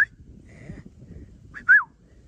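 Two short whistled notes about a second and a half apart, the second sliding downward in pitch.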